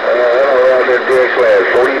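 A voice coming through a CB radio's speaker over a steady hiss of static, narrow-band and hard to make out: a weak long-distance skip signal in rough band conditions.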